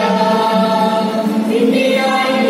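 A small mixed choir of men's and women's voices singing together through microphones, holding sustained notes that shift in pitch.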